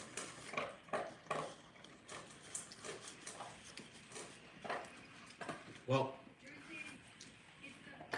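Close-up mouth sounds of people eating soft garlic knots: irregular chewing and lip smacks, with a short closed-mouth murmur about six seconds in.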